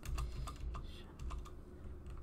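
Computer keyboard being typed on: a run of separate, quick keystrokes.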